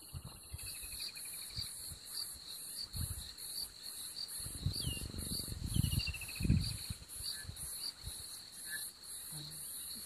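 A leopard feeding on an impala ram carcass, tearing through the skin to get at the meat: irregular bouts of low tearing and chewing sounds, loudest in the middle. Behind it, a steady chorus of crickets pulses about two to three times a second.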